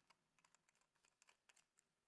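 Near silence with a scatter of faint, light clicks and taps, about a dozen in two seconds.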